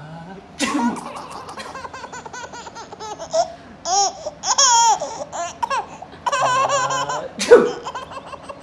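Baby laughing in a run of high-pitched squealing giggles, the loudest burst near the end.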